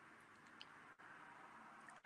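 Near silence: faint room tone, with one small tick just over half a second in.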